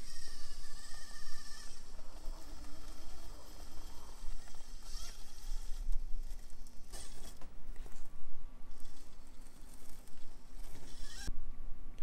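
Traxxas TRX-4M micro RC crawler running over rock: its small brushless motor and geared drivetrain whine, with the pitch shifting as the throttle changes, while the tyres and chassis scrape and knock on the rocks.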